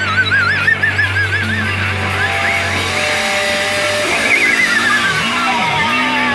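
Rock band playing, led by an electric lead guitar holding high notes with fast, wide vibrato that climb in pitch. About four seconds in, the guitar begins a long slow slide downward.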